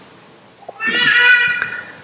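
A short high-pitched cry about a second long, near the middle, rising and then falling slightly in pitch.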